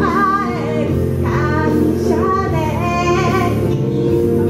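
A woman singing live into a handheld microphone over instrumental accompaniment, her voice holding and bending long notes.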